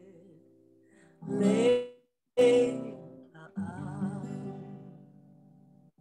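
A song with singing and acoustic guitar reaching its close: two short sung phrases, then a final held chord that slowly fades away.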